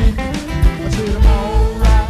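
Live band music: acoustic guitars strummed and picked, with a male voice singing over a heavy low bass pulse.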